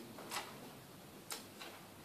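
Two short, faint clicks about a second apart over quiet room tone.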